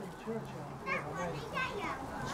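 Indistinct voices of children talking and calling out in the background, with a higher-pitched voice about a second in.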